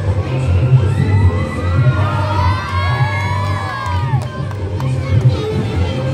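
A crowd of children shouting and cheering, many high voices overlapping most strongly from about one to four and a half seconds in, over dance music with a pulsing bass beat.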